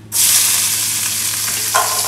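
Chopped green serrano chilies dropped into hot oil in a heavy cast-iron wok-shaped pan, setting off a loud sizzle that starts suddenly just after the start and keeps going steadily. The pan is very hot, the oil already blooming whole spices.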